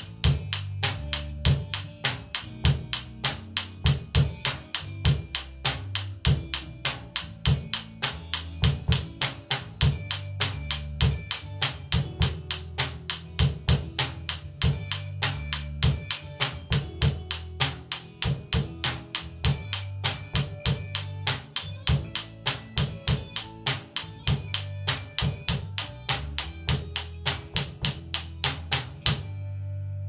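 Acoustic drum kit playing a steady groove of bass drum, snare and cymbal strokes, about three a second, along with a backing track's bass line. The drumming stops about a second before the end while the backing track's low note rings on.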